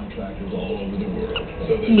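Background television dialogue with a few short, faint high squeaks from a rubber squeaky toy being chewed by a puppy.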